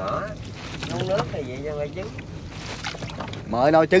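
People talking in conversation, with a steady low rumble underneath and louder voices near the end.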